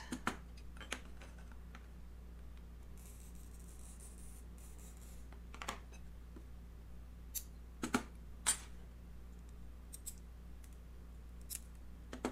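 Stained glass being cut by hand, faint: the scratchy hiss of a glass cutter scoring the sheet for a couple of seconds, then a sharp snap as the glass breaks along the score. A few light clicks of glass and tools on the work table follow, over a low steady hum.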